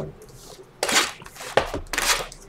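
Shrink-wrapped cardboard trading-card boxes being handled and shifted on a table: a click, then two short scraping rustles, about a second in and near the end.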